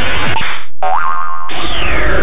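CR Osomatsu-kun pachinko machine playing cartoon reach sound effects over its music: boing-like effects, a brief drop-out just before a second in, then a rising tone and a loud falling whistle near the end as the cannon fires.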